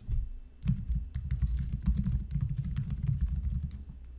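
Typing on a computer keyboard: a quick, steady run of key clicks as a file name is typed in.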